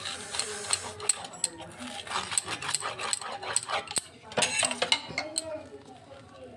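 Crisp toasted bread crunching and crackling in many irregular small clicks as a rotary pizza-cutter wheel is rolled through a grilled sandwich on a paper plate.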